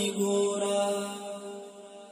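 Wordless held vocal drone backing a Pashto naat: one steady sustained chord with no words, fading out steadily as the recording ends.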